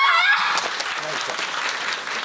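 Audience applauding, a dense patter of many hands clapping, after voices calling out that stop within the first half second.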